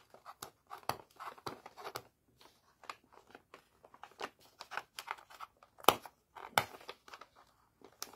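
Red gift-wrapping paper crinkling and rustling in short, irregular crackles as hands pull at its folded, taped corners, with two sharper cracks about six seconds in.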